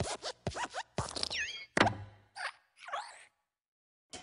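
Pixar logo sound effects of the Luxo Jr. desk lamp hopping on the letter I. There is a quick run of springy creaks and thumps, with a squeak that falls in pitch, and the loudest thump comes about two seconds in as the letter is squashed flat.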